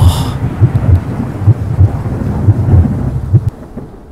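Deep rolling rumble of thunder over a noisy hiss, fading out near the end.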